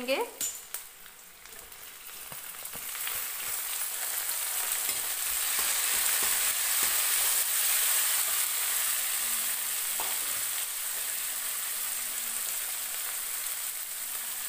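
Onions and freshly added chopped tomatoes sizzling in hot oil in a steel kadhai, stirred with a steel spatula. The sizzle drops briefly near the start, builds over the next few seconds and then holds steady, with a few light scrapes of the spatula.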